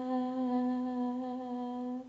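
A woman's voice holding one long hummed note at a steady pitch, the closing note of a Telugu devotional song, slowly fading.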